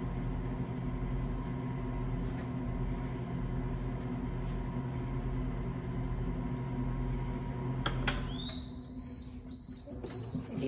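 A commercial oven running with a steady electric hum. About eight seconds in, it cuts off with a click and a high-pitched electronic beep starts, sliding up briefly and then holding one steady tone: the oven's end-of-bake signal.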